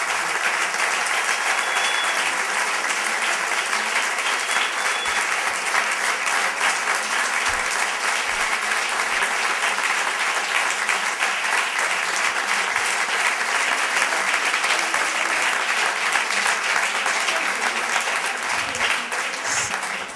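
Sustained applause from a crowded hall, dense and steady, easing off right at the end.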